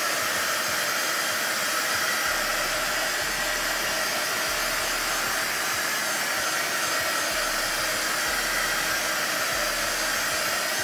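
Craft heat wand running steadily, its fan blowing hot air over a wet acrylic pour to burst the air bubbles in the paint.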